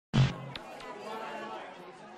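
A short loud burst right at the start, then faint background voices and chatter fading away.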